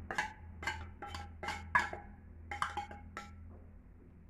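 Metal spoon knocking and scraping against a tin can, tapping canned tuna out: about ten quick, ringing metallic taps, stopping near the end.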